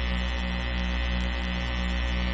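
Steady electrical mains hum in the broadcast audio, with a faint even pulse about three times a second.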